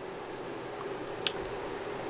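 A single small click about a second in, over a steady faint room hiss: the spring hook clip of an oscilloscope probe being fastened onto a component lead on a breadboard.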